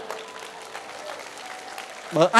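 Audience applause, many hands clapping steadily.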